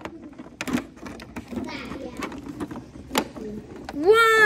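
Plastic wrestling action figures being handled and knocked against a toy wrestling ring: a series of sharp taps and clicks, with the two louder knocks coming under a second in and about three seconds in.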